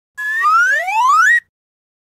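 A cartoon-style rising-pitch sound effect: one pitched tone sweeps steadily upward for a little over a second, then cuts off suddenly.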